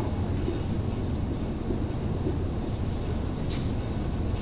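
Steady low background rumble, with a few faint short strokes of a marker writing on a whiteboard.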